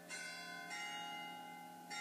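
Faint ringing of bells, with two strikes: one just after the start and another at about two thirds of a second. Their tones hang on and slowly fade.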